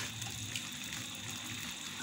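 Steady hiss of pots simmering on a lit gas stove: a pot of saltfish and baked beans and a pot of boiling dumplings.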